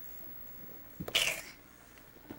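A single short sneeze about a second in: a sharp catch followed by a brief hiss.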